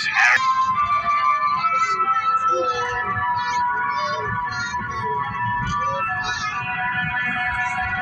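Music of long held notes in several voices, playing steadily, over the low rumble of the train running.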